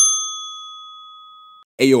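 A single bell-like ding: struck once, it rings with a clear high tone that fades for about a second and a half, then cuts off abruptly.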